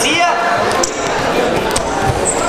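Voices of coaches and spectators calling out, echoing in a large sports hall, with brief high squeaks of wrestling shoes on the mat about a second in.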